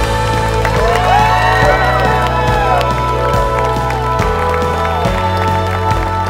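Background music with steady sustained tones, over which a crowd cheers and whoops and applauds, the cheering thickest in the first few seconds.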